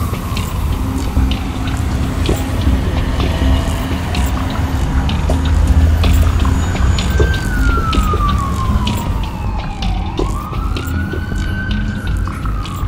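Siren wail over music with a heavy low beat: the siren tone slides slowly down in pitch, then sweeps back up near the end.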